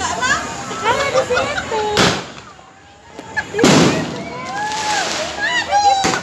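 Two fireworks bursts, sharp bangs about two seconds in and again about three and a half seconds in, the second one louder and longer.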